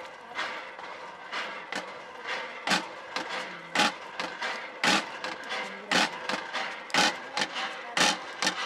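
Repeated chopping strikes of a long-bladed hand tool cutting into the ground among plants, about one stroke a second.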